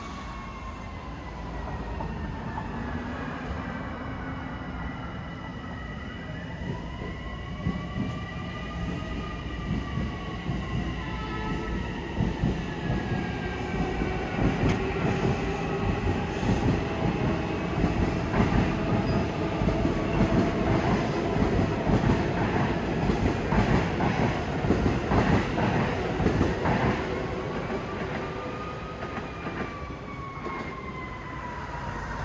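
A train passing, its wheels clattering on the rails, building from about seven seconds in, loudest through the second half and fading near the end. A siren wails, rising and falling, through the first third and again near the end.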